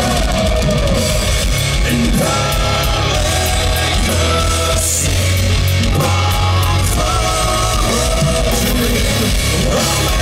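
A heavy metal band playing live at full volume: distorted electric guitars and a drum kit, with held melodic lines over a steady low end.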